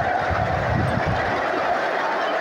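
Steady din of a huge stadium crowd, thousands of voices blended into one continuous wash of noise, with a low rumble on the microphone during the first second.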